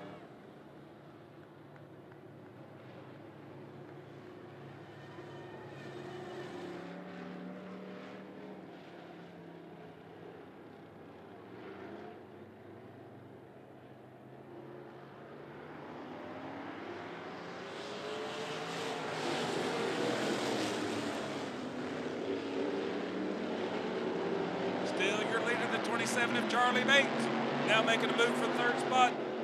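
Engines of a field of dirt-track street stock cars running at low speed in a pack under caution, their pitch wavering. The sound swells as the pack comes closer, loudest around two-thirds of the way through.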